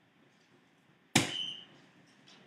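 A soft-tip dart hits an electronic dartboard about a second in: one sharp hit followed by a short electronic tone from the machine.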